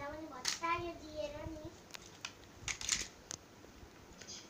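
A small child's wordless vocalizing, rising and falling in pitch, for the first second and a half, then several sharp plastic clicks as a toy car and its loose panels are handled.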